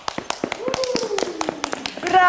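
Quick, irregular hand claps from a few people, with a voice holding a long note that slides down in pitch over the second second.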